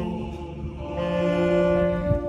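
Men's choir singing long held notes in harmony; the sound dips briefly, then swells into a sustained chord about a second in.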